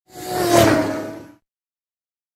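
A single whoosh sound effect that swells up and dies away within about a second and a half, with a faint tone underneath that dips slightly in pitch.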